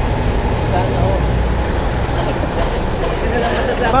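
Steady low rumble of passing street traffic, with faint voices of people standing around.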